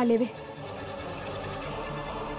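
A woman's voice stops just after the start. The drama's background music then runs on: a held low tone pulsing on and off under a fast, fine ticking.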